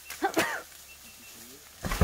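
Asian elephant calling in alarm: two short gliding cries about a quarter second in, then a loud, deep roar breaking in near the end. It is the sound of an elephant startled after its leg slipped into a pit.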